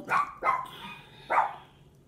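A dog barking: three short barks in the first second and a half.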